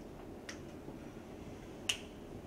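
Two short sharp clicks over low room noise: a faint one about half a second in and a louder, crisper one near the end.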